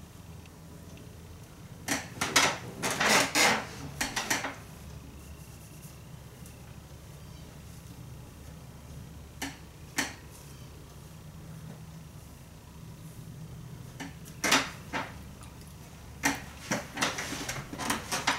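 Fingers working through hairspray-stiffened, teased curls: bunches of short rustling and crackling bursts, with a couple of single clicks in the quiet stretch between them.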